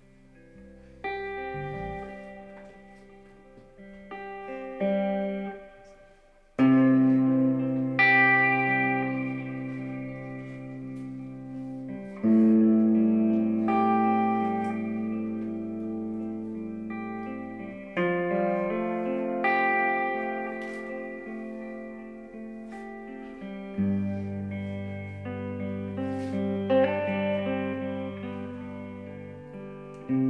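Slow instrumental intro on a Telecaster-style electric guitar and an electric bass: a few quiet notes at first, then full chords struck about every six seconds and left to ring out over long held bass notes.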